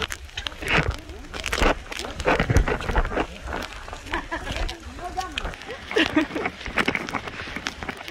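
Footsteps on a wet, muddy dirt trail, uneven and irregular, with people's voices and laughter coming and going.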